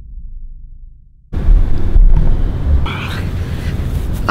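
The tail of a music track fading out, then an abrupt cut about a third of the way in to outdoor sound dominated by wind rumbling on the microphone.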